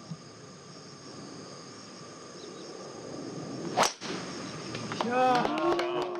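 Driver striking a golf ball off the tee: one sharp crack about four seconds in. A steady high-pitched drone runs underneath.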